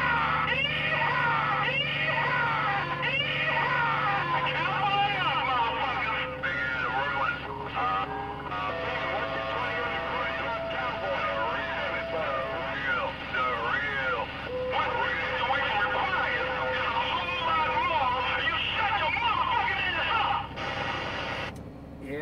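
CB radio speaker on channel 19 carrying a jumble of other stations' transmissions: warbling, gliding whistles and squeals with garbled voices underneath, no clear words. A steady whistle tone holds for about four seconds in the middle.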